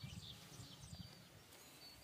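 Near silence outdoors: a faint low rumble, with a few faint, short, high bird chirps.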